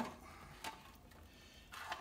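Valve springs and small metal parts being set down in a parts tray, heard faintly: a light click about two-thirds of a second in and a short clatter near the end.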